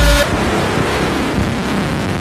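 Frenchcore track in a breakdown: the pounding distorted kick drum stops about a quarter second in and gives way to a loud, dense noise wash with no beat.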